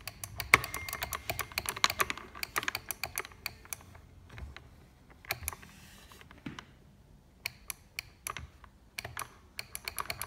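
Rapid, irregular plastic clicks from a Beurer humidifier's spring-loaded switch plunger being pressed and released by hand, testing whether the repaired magnetic switch now makes contact. The clicks come thick and fast for the first few seconds, then fewer and more spaced out.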